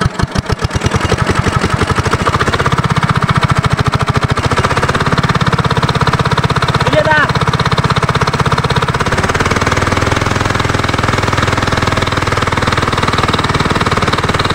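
R170A 4 hp single-cylinder diesel engine running fast and steady just after starting, a rapid even knock of firing strokes; its note changes slightly about nine seconds in. It is running after a tappet adjustment and cylinder-head refit.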